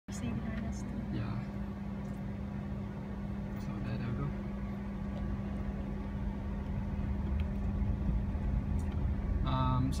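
Inside the cabin of a Mitsubishi i-MiEV electric car moving off, a steady low hum over a low road rumble that slowly grows louder. A man starts speaking near the end.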